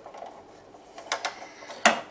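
Plastic trailer of a Generation 1 Optimus Prime toy being handled and set down on a table: a few light clicks just after a second in, then one sharp click near the end.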